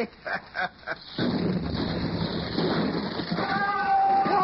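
Radio-drama sound effect of a dynamite blast: a man laughs briefly, then about a second in the explosion goes off suddenly and its rumble keeps on, as the top of a rocky slope comes down. Near the end a wavering, high-pitched cry starts over it.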